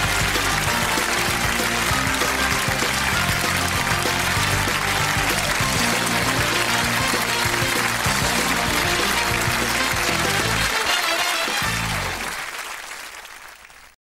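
Closing theme music over studio audience applause, fading out over the last two seconds.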